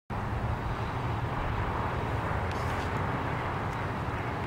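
Steady outdoor background rumble with a light hiss, with no distinct event and only a couple of faint ticks.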